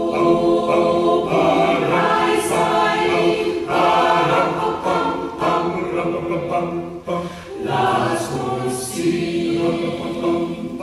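Mixed choir of men's and women's voices singing unaccompanied in harmony, with short breaks between phrases about three and a half and seven seconds in.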